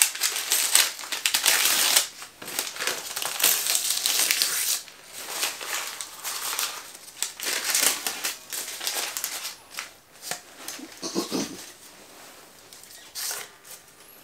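Packing material crinkling and rustling in bursts as it is pulled off and crumpled away from a new electric guitar, the bursts thinning out over the last few seconds.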